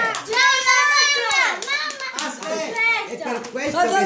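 A child speaking in a high voice, with a few faint clicks.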